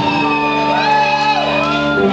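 Live rock band holding a sustained chord on electric guitar and bass, with a voice shouting over it in long gliding notes.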